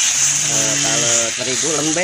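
Rice-flour batter sizzling as it is poured into a hot bandros mold: a steady high hiss that starts with the pour.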